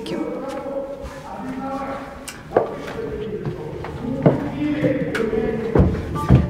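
Indistinct voices in a large, echoing space, some notes drawn out like singing, with several sharp knocks through the second half.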